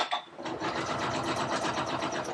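Domestic sewing machine running at full speed with the foot pedal pressed all the way down, stitching a quilt sandwich in free-motion quilting: a short click, then a fast, steady run of needle strokes starting a moment later.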